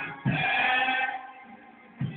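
Live church music: a low hit about a quarter second in and a loud held note or chord lasting under a second, which then dies away.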